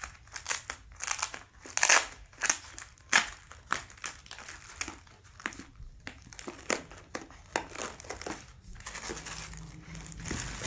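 Silver foil and plastic parcel wrapping crinkling and crackling as it is pulled open by hand, in quick irregular rustles that are busiest in the first few seconds and thin out later.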